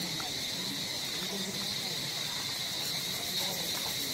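Insects droning steadily in a continuous high-pitched buzz, over a low, busy background murmur.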